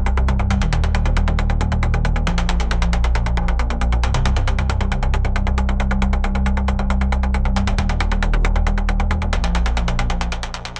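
Dark techno track: a deep, droning electronic bass with a fast, steady ticking beat running over it.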